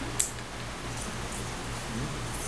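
A single sharp click about a quarter of a second in, as a laptop is clicked to advance a presentation slide, over a steady low electrical hum.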